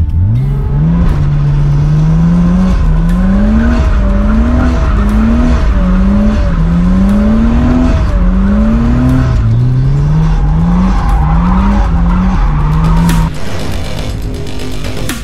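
Nissan Cefiro drift car heard from inside the cabin, its engine revving up and dropping back again and again, about one climb a second, as it is driven through drifts, with tyres squealing. The sound drops suddenly near the end.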